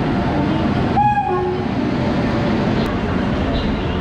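Indian Railways electric locomotive and passenger coaches pulling slowly in past the platform, with a steady rumble of wheels on rails. A short horn note sounds about a second in.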